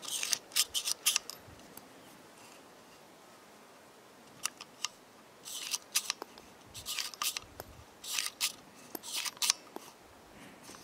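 Small metallic clicks and rattles from a Ruger Wrangler .22 single-action revolver. Its cylinder is turned by hand at the open loading gate while the ejector rod pushes out the spent .22 LR cases. The clicks come in short clusters: one right at the start and several more through the second half.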